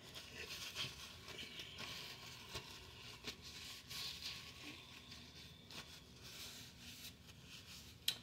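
Faint rustling and crinkling of paper napkins as wet hands are patted and rubbed dry, with a few light ticks.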